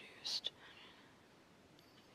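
A brief soft whisper with a hissing 's' about a quarter second in, then faint room tone.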